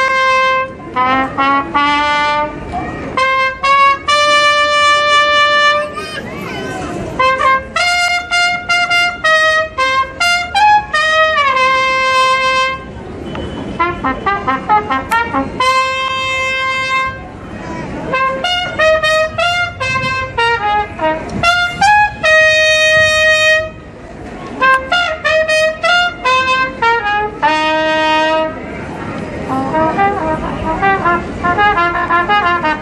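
Brass band playing, with trumpets carrying the melody in phrases of long held notes and quick runs.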